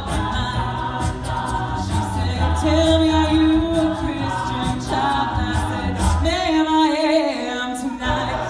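Mixed-voice a cappella group singing sustained chords over a sung bass line, with vocal percussion clicking on top. About six seconds in the bass drops out, leaving the higher voices swelling upward.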